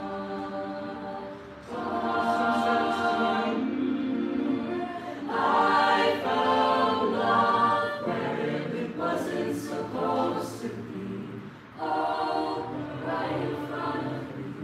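Mixed-voice a cappella group singing sustained chords. The voices swell louder about two seconds in and again a few seconds later, then thin out briefly before coming back in near the end.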